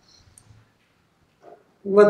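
A quiet pause in a room, with a few faint small noises, then a man's voice starts speaking loudly just before the end.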